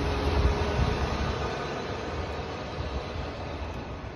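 Wind rumbling and hissing on a phone's microphone, easing off gradually as the phone comes in from the open balcony.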